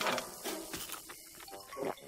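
Cartoon crunching and munching as a mouthful of wrapped candy is pecked up off the ground and chewed, with a few sharp crackles. A brief clucking vocal noise follows near the end.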